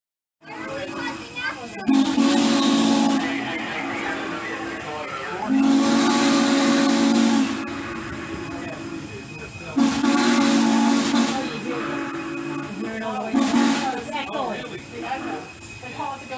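Steam whistle of Norfolk & Western class J 4-8-4 No. 611 sounding four blasts, three long and a last short one, each with a hiss of steam. Between the blasts the train runs steadily.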